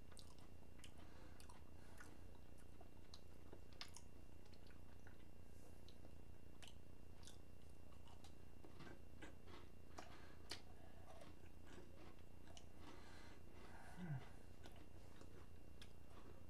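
A person chewing holiday cookies: faint, irregular mouth clicks and crunches over a steady low hum, with a brief low falling sound near the end.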